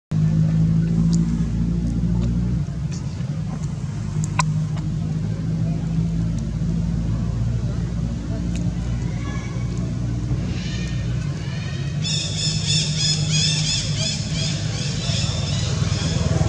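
A steady low motor hum. A high, rapidly pulsing buzz joins about ten seconds in and gets louder about two seconds later.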